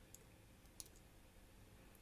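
Near silence with a few faint key clicks from a computer keyboard as a password is typed, one a little louder about a second in.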